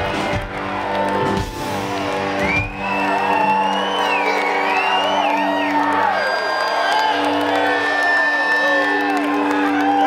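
Live rock band with amplified electric guitars finishing a song: the full band sound with drums and bass cuts off about two and a half seconds in, leaving held guitar tones ringing. Over them the crowd whoops and cheers.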